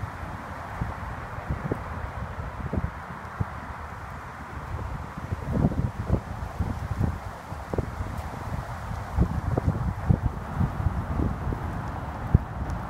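Wind buffeting the microphone in gusts: an uneven low rumble that swells and falls, loudest about halfway through and again later, over a steady hiss of wind.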